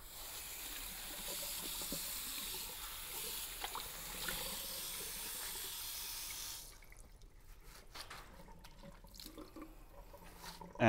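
Water running from a tap into a small sink as a steady hiss, shut off abruptly about two-thirds of the way through, followed by a few faint knocks.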